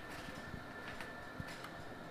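Faint background noise with a thin steady high tone and a few light clicks and taps.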